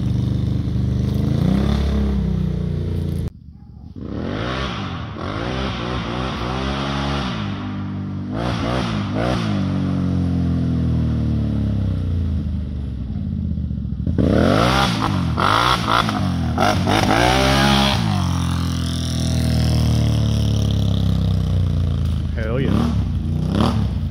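2022 Can-Am Outlander 850 XMR ATV's V-twin engine, fitted with upgraded CVTech clutching, revving up and falling back several times as the rider accelerates hard and lets off, the pitch climbing high on each pull. The sound drops out briefly about three seconds in, then the runs resume.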